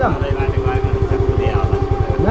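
A motorcycle engine idling with a fast, even pulse.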